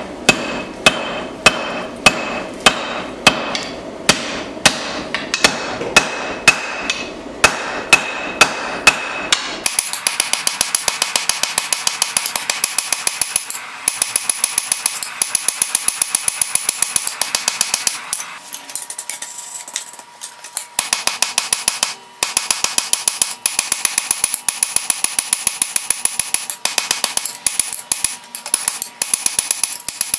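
Hand hammer forging hot leaf-spring steel on an anvil, the anvil ringing with each blow. The strikes come about two a second for the first ten seconds, then change to a quicker, slightly lighter steady run of about five a second, broken by a few short pauses.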